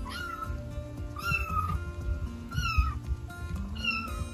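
A kitten meowing: four high-pitched calls about a second apart.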